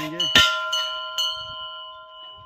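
Hanging metal temple bell (ghanta) rung by hand: its clapper strikes once loudly about a third of a second in and lightly again about a second later. The bell's several tones ring on together and slowly fade.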